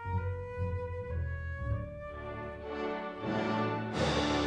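An orchestra playing: bowed strings hold a line of notes that steps upward over pulsing low notes. The sound swells near the end and breaks into a sudden loud full chord right at the close.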